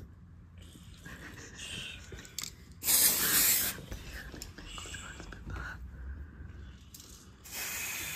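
Aerosol spray can sprayed in two hissing bursts: a loud one about three seconds in, lasting under a second, and another starting near the end.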